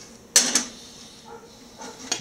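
A colander set down onto a ceramic plate: a sharp clatter about a third of a second in, then a couple of faint knocks near the end.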